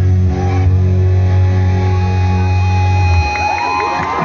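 Live band through a PA system, holding a sustained final chord with heavy bass that cuts off about three seconds in. The audience then starts cheering.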